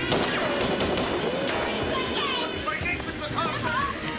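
Action-drama soundtrack: a sudden crash, then repeated sharp cracks of gunfire and impacts over music.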